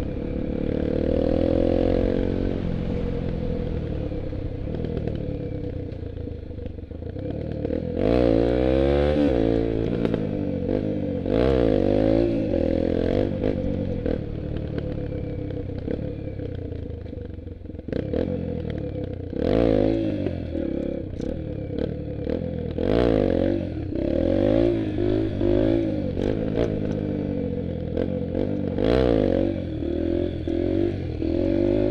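Dirt bike engine running while being ridden, steady at first. From about eight seconds in its pitch rises and falls again and again as the throttle is opened and closed, with a few sharp knocks along the way.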